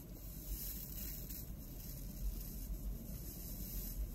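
Flexible-neck butane lighter hissing steadily as its flame is held to a candle wick.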